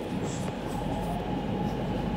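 Interior running noise of a Shenzhen Metro Line 3 train heard inside the carriage: a steady low rumble with a faint, steady motor whine.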